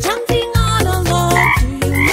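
Upbeat children's-song backing music with a steady beat, and a cartoon frog croaking sound effect twice in the second half.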